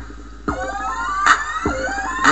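Hip hop instrumental beat with no vocals: two heavy drum hits with deep falling bass, and a rising siren-like sweep coming in about half a second in.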